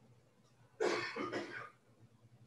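A man coughing, two harsh coughs in quick succession about a second in, part of a coughing fit that the listener takes for a hay fever cough or water gone down the wrong way.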